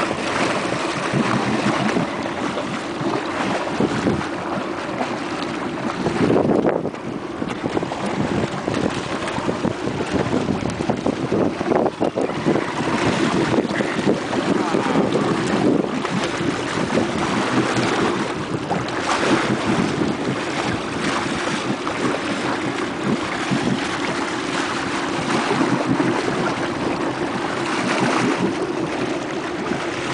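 A boat's motor running steadily at the water, with wind buffeting the microphone and water splashing and lapping at the surface.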